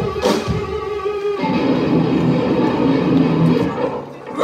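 Live blues band playing, guitars to the fore, with a held note giving way to a new chord about a second and a half in.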